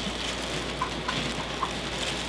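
Steady room hiss, with a few faint small scratches from a stiff-bristled paintbrush working through substrate in a glass jar.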